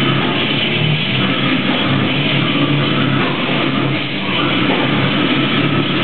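Brutal slam death metal band playing live: a loud, dense, unbroken wall of heavily distorted electric guitars over drums.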